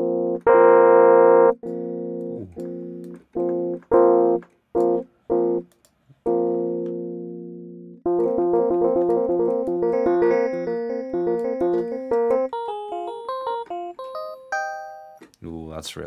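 Ableton's Electric software electric piano, a physical model of a Rhodes/Wurlitzer-style tine piano, playing held chords and short stabs, then a quicker run of notes that climbs higher from about eight seconds in. With the tone section's decay set long, the notes ring on and sound quite harsh.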